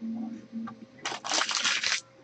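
Trading cards and pack wrapper being handled on a table: a rustling, crinkling burst that starts about a second in and lasts about a second, after a brief low murmur.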